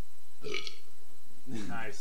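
A person burping, a low rough burp starting about a second and a half in, after a brief short sound about half a second in.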